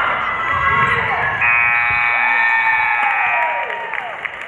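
Gymnasium scoreboard buzzer sounding once for about two seconds, starting a little over a second in. It marks the end of the fourth period with the game clock at zero. Crowd shouting and cheering runs under it.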